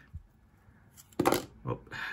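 Trading cards handled between the fingers: a small tap just after the start, then a brief rustle of card sliding over card a little over a second in, followed by a short spoken "Oh".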